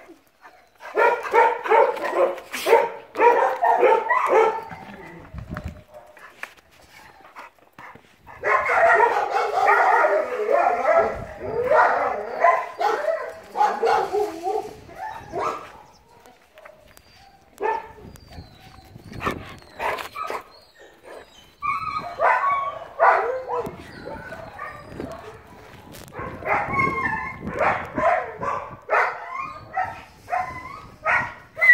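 A dog barking over and over in long rapid bouts, with short pauses in between.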